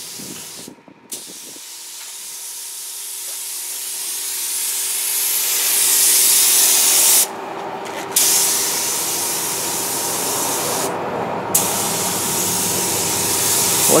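Air-fed gravity-feed spray gun spraying paint: a steady hiss of air and atomised paint that builds over the first few seconds. It cuts off briefly three times as the trigger is let go: near the start, for about a second around seven seconds in, and again around eleven seconds in.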